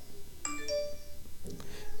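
A two-note ding-dong chime, with the second note about a quarter second after the first and both ringing out and fading over about a second.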